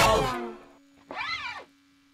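The guitar music fades out in the first half second, leaving one low note held. About a second in comes a single short cat meow, rising then falling in pitch.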